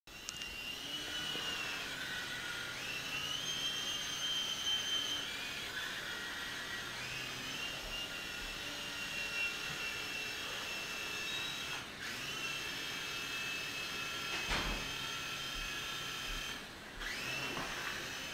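Small battery-electric motors and rotors of a mini indoor RC model helicopter, whining at a high pitch that rises and falls with the throttle, dipping briefly twice.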